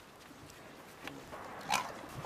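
Staffordshire bull terrier making one short vocal sound near the end, over a faint background.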